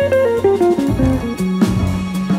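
Jazz guitar playing a quick descending run of single notes over bass, with a string quartet in the recording, settling on a held low note near the end.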